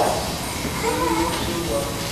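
A quieter voice speaking briefly in the middle, echoing in a large church sanctuary, between louder spoken lines.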